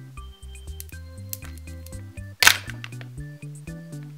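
Background music with a steady bass line. About two and a half seconds in, one short loud crackling rip as the foil seal is peeled off a Kinder Joy plastic egg half.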